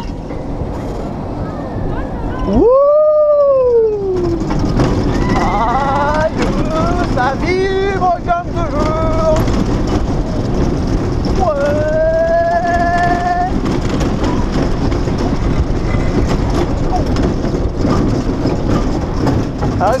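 Trace du Hourra, a Mack Rides bobsled coaster, running down its trough: a steady rush of wind and wheel noise. Over it, riders yell and whoop: one loud rising-and-falling yell about three seconds in, several shorter cries between about five and nine seconds, and a rising whoop around twelve seconds.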